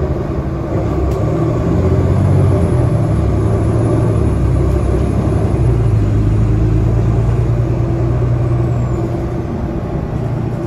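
Nova Bus LFS city bus heard from inside the passenger cabin while driving: a steady low engine and drivetrain hum with road rumble, the engine note shifting in pitch a few times.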